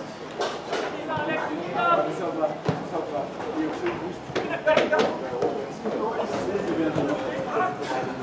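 Indistinct chatter of several spectators' voices at an amateur football match, with a few short sharp knocks scattered through it.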